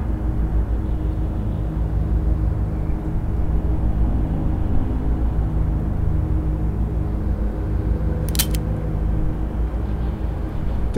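A steady low rumble with a few held low tones under it, and a brief sharp sound about eight seconds in.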